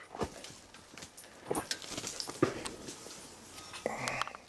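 An Australian Shepherd mix puppy mouthing and chewing right at the microphone, with irregular soft clicks, snuffles and rustles of fur.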